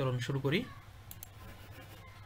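A man's voice for the first half second, then a few faint, quick computer mouse clicks about a second in.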